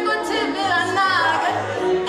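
A woman singing into a microphone, her voice sliding up and down in pitch, over music with a low bass note.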